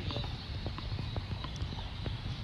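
Outdoor ambience with a steady low rumble and scattered light, irregular knocks.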